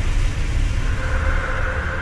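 Low rumbling drone with faint held tones, the tail of a TV channel's logo sting, slowly fading out.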